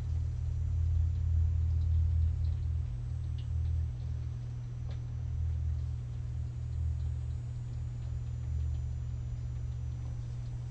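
A steady low electrical hum, with a few faint ticks and light scratches from an alcohol marker's tip colouring on paper.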